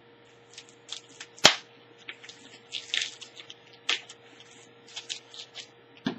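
Plastic bubble wrap crinkling and crackling as it is cut open with a knife and unwrapped, with a few sharp snaps. The loudest snap comes about one and a half seconds in.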